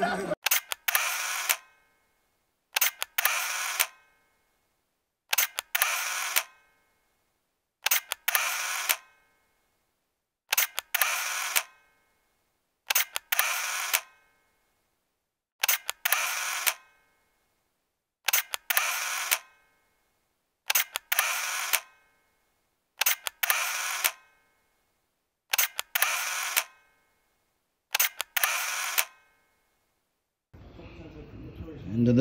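Camera shutter sound, repeated twelve times at an even pace of about one every two and a half seconds. Each is a quick double click that dies away within about a second, with silence between.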